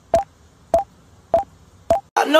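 Four sharp clicks, each with a short beep in it, evenly spaced about 0.6 s apart, like a ticking beat.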